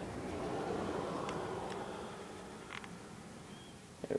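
Faint handling noise of a KWC M1911A1 spring airsoft pistol turned in the hands, with a few light clicks, over a soft rushing noise that swells in the first second and fades away.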